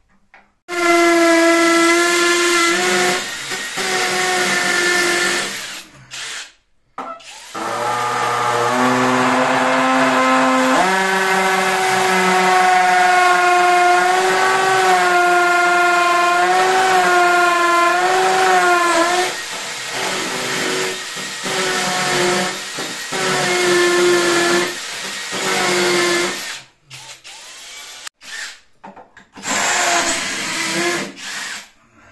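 Cordless drill boring into ceramic wall tile: a loud motor whine that starts about a second in, runs in long stretches with a short stop, steps up in pitch partway through as the speed rises, and breaks into shorter stop-start runs near the end.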